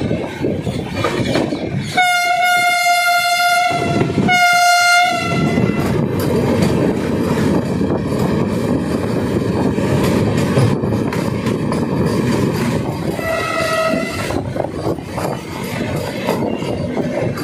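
Indian Railways train running with steady rail noise, while a train air horn sounds two long blasts about two seconds in, then a shorter, fainter blast near the end.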